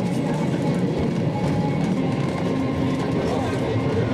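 A 1913 Oslo Sporveier tramcar running along the rails, heard from inside its wooden passenger saloon as a steady rolling rumble, with passengers talking over it.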